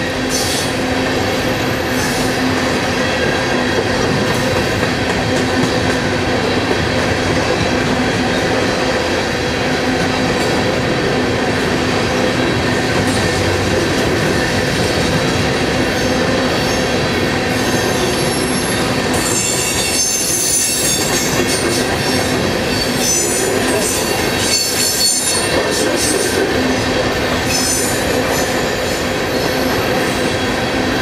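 Freight train of coal cars rolling past with a steady loud rumble of wheels on rail. High-pitched wheel squeal comes and goes, strongest through the later part.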